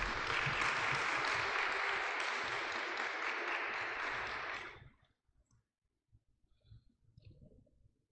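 Applause, steady clapping that stops abruptly about five seconds in, followed by near silence.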